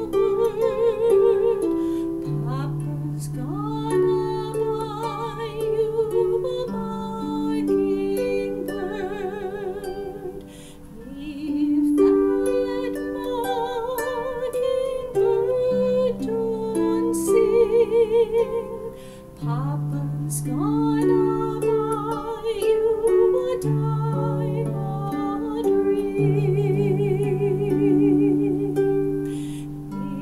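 Harp played in plucked, held notes, accompanying a woman's voice singing a slow lullaby with vibrato.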